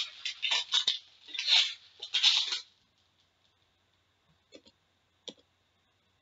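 Foil wrapper of an Upper Deck Premier hockey card pack crinkling and tearing open in the hands, in several short rustling bursts over the first two and a half seconds, then near silence broken by two faint clicks.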